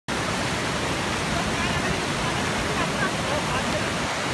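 Fast mountain river rushing over rocks, a steady wash of water noise, with faint voices over it.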